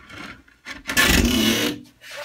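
A Macassar ebony board rubbing and scraping against the stacked lumber around it as it is shifted by hand. The rough scrape sets in near the middle and lasts about a second.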